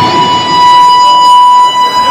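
Electric guitar holding one long, high note in a solo, loud and steady in pitch with little beneath it.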